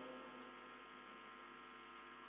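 Near silence with a faint, steady electrical mains hum from the microphone and sound system.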